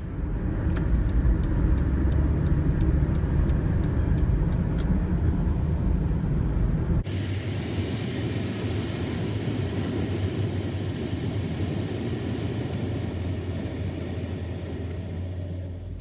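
Road and engine noise inside a moving car's cabin at highway speed: a steady low rumble with tyre hiss. About seven seconds in the sound changes abruptly, with less deep rumble and more hiss, as one stretch of driving cuts to another.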